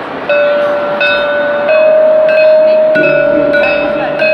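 Struck metal percussion ringing out in a slow run of notes, one stroke about every two-thirds of a second, each note sustaining. A lower sound joins about three seconds in.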